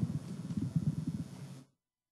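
Low rustling and bumping of microphone handling noise, with no speech, that cuts off abruptly into silence a little before the end.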